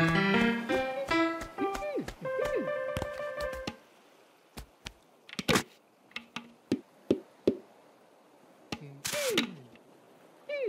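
Playful children's cartoon music with bright melodic notes and falling pitch slides for the first few seconds. It then gives way to a quiet stretch of sparse soft taps and thunks as sand is scooped into a plastic sand bucket and patted, with one sharp tap in the middle. Near the end comes a short rushy burst with a falling tone as the bucket is lifted off.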